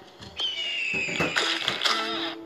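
Cartoon sound effects: a high whistle slides slowly down in pitch, then a messy splat with a short clatter follows a little past halfway, as goo splatters over the characters' faces.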